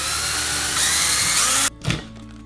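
Cordless drill-driver running, unscrewing the screw of a wall power socket's cover plate. It runs for under two seconds, gets a little louder about halfway, and cuts off suddenly, followed by a short knock.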